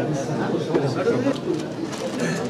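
Indistinct, overlapping men's voices talking in a room.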